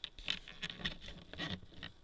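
Rapid, uneven light clicks and taps with a little scratching, from hands handling a computer keyboard and trackball.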